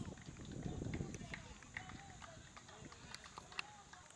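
Outdoor ambience of spectators: faint, indistinct voices, a low rumble strongest in the first second, a few short sharp clicks, and a steady high-pitched drone.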